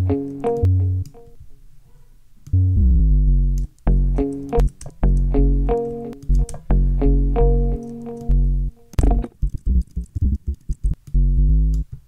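Plucked sub bass from Xfer Serum, a square-wave sub oscillator through a 24 dB low-pass filter at about 250 Hz with the sustain pulled down, playing short low notes. After a short pause it plays a bass line under a looping plucked guitar melody.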